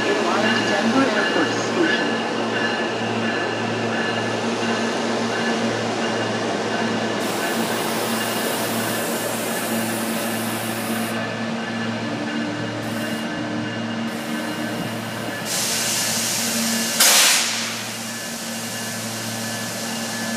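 RTD A-Line electric commuter train (Hyundai Rotem Silverliner V) standing at the platform, its onboard equipment humming steadily with several constant tones. A short loud hiss comes near the end.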